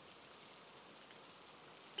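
Faint, steady rain-like hiss of a background ambience.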